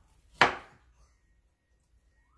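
A chef's knife chopping down through kiwi onto a bamboo cutting board: one sharp knock of the blade on the wood, a little under half a second in.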